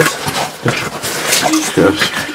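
Short, indistinct voice sounds among scrapes and knocks of cavers' bodies and gear against the rock while crawling through a narrow passage.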